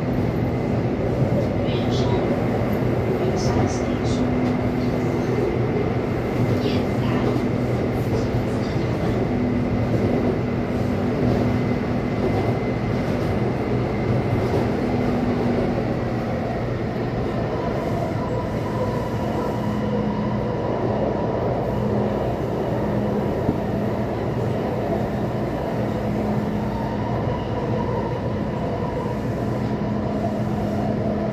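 Taipei Metro C301 train with retrofitted propulsion running, heard from inside the car: a steady rumble of wheels on rail under the steady hum of the propulsion equipment. About halfway through, the hum drops slightly in pitch and a higher steady tone joins it as the train approaches the next station.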